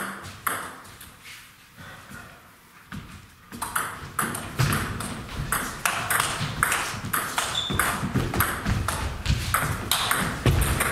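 Table tennis ball clicking off bats and table: a single bounce near the start, then a fast rally from about three and a half seconds in. The clicks are mixed with low thuds from the players' footwork.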